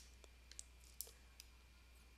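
Near-silent room tone with a steady low hum, broken by a handful of faint, scattered clicks.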